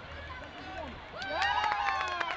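Distant voices of touch rugby players calling out to each other on the field, faint at first, then several overlapping calls and shouts about a second in.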